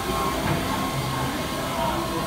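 Busy food-court ambience: a steady hum of ventilation and machinery under the murmur of other people's voices.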